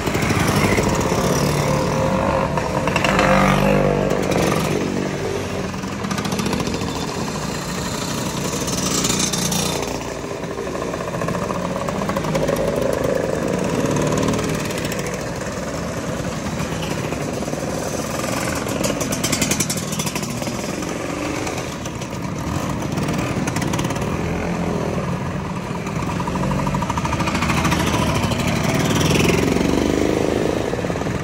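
A long procession of scooters riding past one after another, classic two-stroke Lambrettas and Vespas mixed with modern Vespas. Their engines run continuously, swelling and fading every few seconds as each scooter goes by.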